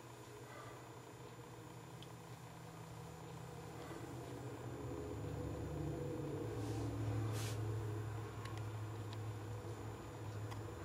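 Faint low rumble that swells over several seconds and eases off slightly near the end, with a short hiss about seven seconds in.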